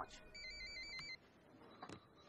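Electronic telephone ringing: one short warbling trill in the first second, with a click at its end.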